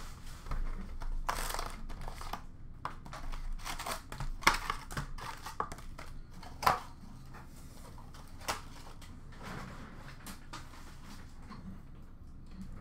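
Hands unwrapping and opening a cardboard hockey card hobby box: plastic wrap crinkling and tearing and cardboard flaps handled. There are two sharp snaps, the loudest sounds, about four and a half and nearly seven seconds in, and only faint rustling after that.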